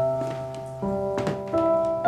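Background music: slow, sustained notes, with a new note or chord entering about every three-quarters of a second.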